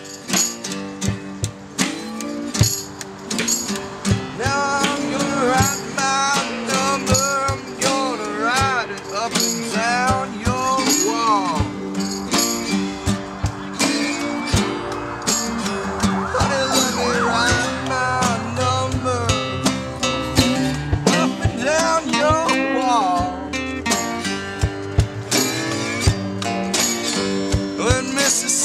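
Acoustic folk-blues band playing an instrumental break: strummed acoustic guitars and a snare drum keeping a steady beat, under a sliding, wavering lead melody line, likely a saxophone solo.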